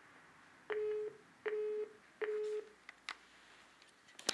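Three short, identical beeps from a desk telephone, evenly spaced under a second apart, then a couple of faint clicks: the phone's tone of a call that has just ended.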